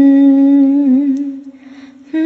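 A woman's singing voice holding one long, steady note in a Bengali song, wavering slightly before it fades out about a second and a half in.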